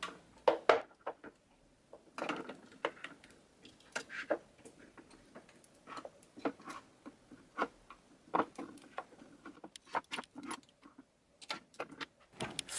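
Foundation bottles clinking and knocking against each other and the drawer as they are picked up and shifted forward by hand: a busy run of irregular small clicks and taps.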